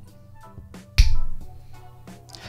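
A single finger snap about a second in, sharp and loud, over soft background music.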